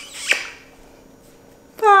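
A brief sharp sound just after the start, then quiet room, then a woman calling a long, high-pitched 'bye' near the end.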